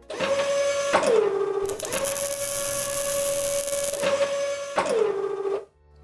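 Motor whine of industrial robot arms, as a sound effect: a steady pitched hum that drops in pitch about a second in, comes back up, and drops again near the end before cutting off. A hissing noise joins it from about two to four seconds in.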